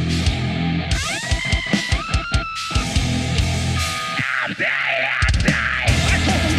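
A heavy metal band playing live: distorted electric guitars and bass chugging a low riff with a drum kit, while a high guitar lead slides up in pitch about a second in. The low riff drops out briefly around four seconds in, then the full band crashes back in near the end.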